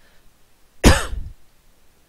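A single short, loud cough from a person, about a second in, with a falling voiced tail.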